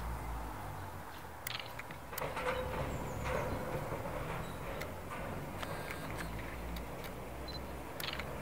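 A tram approaching in the distance along its track, a low steady rumble with a few sharp clicks and a brief held tone a couple of seconds in.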